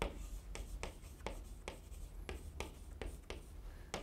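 Chalk in a holder writing a word on a green chalkboard: a quick series of short, faint strokes and taps, about three a second.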